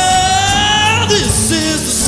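Live church worship band playing, with a singer holding one long note that slides upward and breaks off about a second in.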